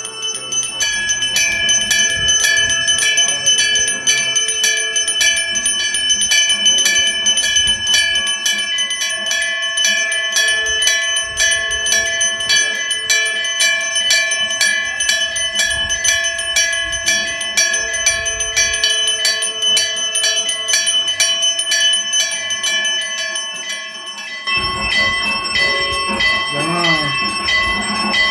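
Temple bells rung quickly and continuously during puja, a fast even run of strikes with the ringing tones overlapping. Near the end the ringing thins and a lower, wavering tone joins it.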